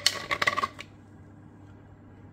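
A mixing stick rapidly clicking and scraping against a resin mixing cup, with a ringing tone, stopping a little under a second in.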